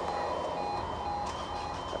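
Level crossing's electronic warning alarm sounding in a repeating on-off pattern of short tones while the crossing is still closed, just before the barriers rise.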